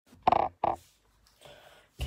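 Two short squeaks in quick succession, the first slightly longer, followed by faint rustling.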